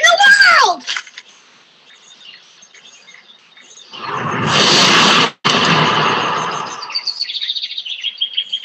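A boy's voice shouts briefly at the start over faint birds chirping. About four seconds in, a loud rushing noise swells for a little over a second, breaks off for an instant, then fades over about a second and a half. Birds chirp again near the end.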